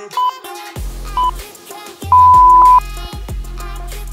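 Workout interval timer beeping over background music with a pulsing bass: two short beeps about a second apart, then one long, louder beep that marks the end of the work interval and the start of the rest.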